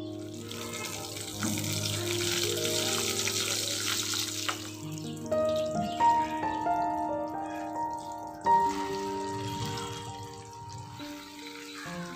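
Whole spices (dried red chillies, cardamom, cumin and black pepper) sizzling in hot oil in a pan. The sizzle is strongest for the first few seconds and then fades, under steady background music.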